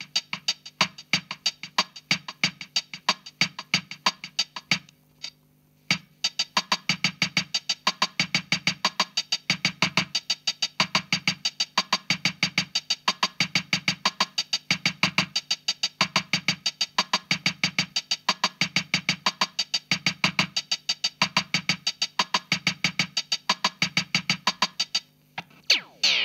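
Casio CZ-230S's built-in Bossa Nova rhythm, with a fast, even pattern of drum-machine clicks over a repeating synth bass figure, played through an Alesis Midiverb 4 effects preset. The sound drops out for about a second around five seconds in and again just before the end.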